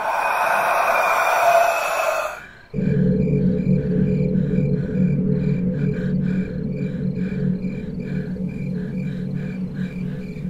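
Suspense background music with a steady pulse about twice a second. It opens with a loud hissing noise for about two and a half seconds, which then gives way to a low sustained drone.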